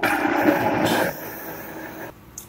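Vitamix blender motor running, whipping a jar of hot coffee with ghee, MCT oil and coconut oil. Louder for the first second, then steadier and quieter until it stops near the end.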